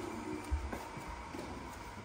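Faint background music, with a soft low thump about half a second in and a few light knocks.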